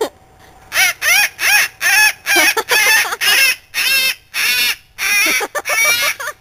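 White cockatoo calling: a rapid run of about a dozen short, harsh, high-pitched calls, roughly two a second, starting about a second in.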